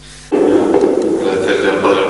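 A man's voice over a church public-address system, cutting in suddenly about a third of a second in and running on without pauses, smeared by the church's echo.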